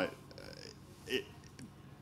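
A pause in a man's talk: faint room noise with one brief throaty vocal sound about a second in, a hesitation noise.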